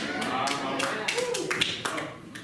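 A few scattered hand claps, about eight irregular claps, mixed with voices responding from a congregation in a large room.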